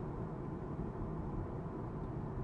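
Steady road and tyre noise heard inside the cabin of a 2023 Tesla Model 3 Performance cruising at about 37 mph. There is no engine note, only a low, even hum.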